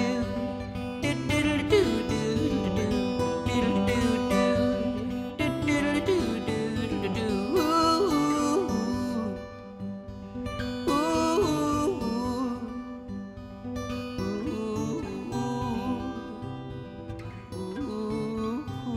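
Acoustic guitar playing a slow song with a man's wordless vocal line over it, growing quieter about halfway through.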